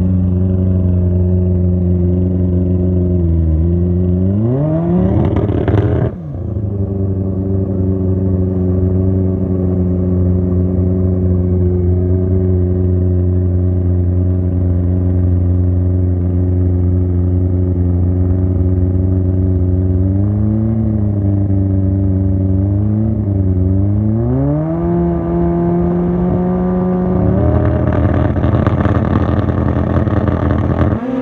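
Pro Street drag bike engine idling with a loud, steady note, revved up and cut off sharply about six seconds in, then given a couple of short throttle blips. Near the end it is brought up to a higher steady speed and held there, growing rougher and louder.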